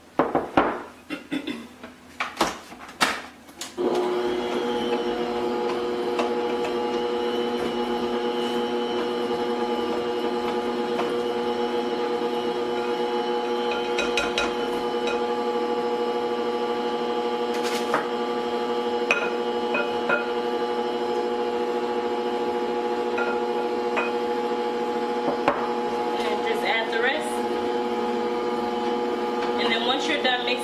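Knocks and clicks of a spatula on the beater and glass bowl, then about four seconds in an electric stand mixer starts and runs at a steady hum, beating butter, sugar and flour. A few sharp clicks of the spatula against the bowl sound over the motor.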